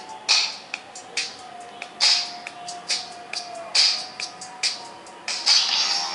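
Music playing through a small tablet's built-in speaker: a beat of sharp hits about once a second under a held tone.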